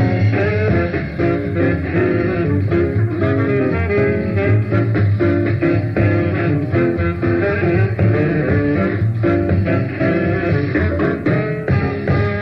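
A 1952 small-group jazz record playing: a trumpet and tenor saxophone band with a rhythm section, many quick notes over a steady beat.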